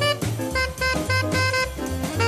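1950s hard-bop jazz record: an alto saxophone plays a quick line of short notes over walking bass, drums and piano.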